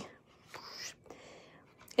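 Faint rustle of a strip of patterned paper sliding along the guide slot of a Stampin' Up! Delightful Tag punch, heard as two soft brushing sounds as it is pushed in to the stop.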